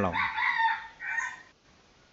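An animal call lasting about a second, starting right after a short spoken word and then breaking off into quiet.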